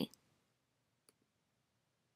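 A single faint mouse click about a second in, against near-silent room tone.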